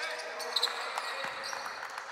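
Basketball practice on a hardwood court: balls bouncing, with short sneaker squeaks on the floor.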